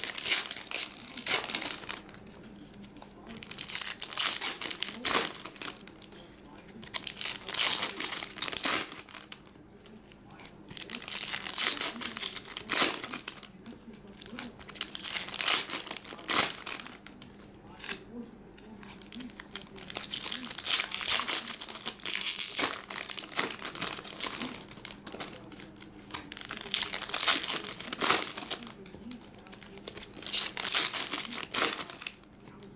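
Foil trading-card packs (2023 Topps Chrome Platinum) crinkling and tearing as they are ripped open and handled. The sound comes in repeated bursts of a second or two each, with short quieter gaps between them.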